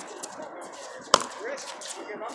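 A pickleball paddle striking the hard plastic ball: one sharp, loud knock a little over a second in, with fainter knocks around it.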